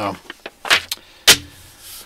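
Two short, sharp handling noises about half a second apart, the second the louder: a paper instruction sheet being lowered and laid on a wooden table.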